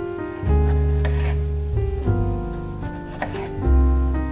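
A kitchen knife slicing through a tomato onto a bamboo cutting board, a few short cuts, under louder background music with a strong bass line.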